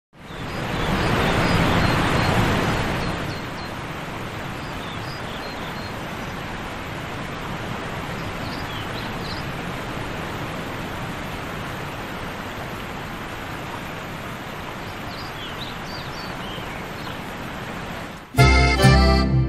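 Steady rushing noise of ocean surf, louder for the first three seconds and then even, with faint high bird chirps now and then.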